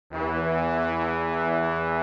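A single low, brassy horn note held steadily for about two seconds as the opening of intro music.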